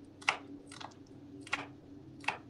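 Kitchen knife cutting a shallot on a cutting board: a few irregular sharp taps of the blade against the board.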